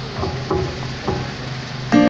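Upright double bass plucking a few separate notes over a steady low held tone, as the amplified band starts a song. A louder, fuller attack comes right at the end.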